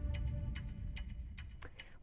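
Tail of a news segment's title sting: a low rumble fading out under a run of sharp ticks, about three or four a second.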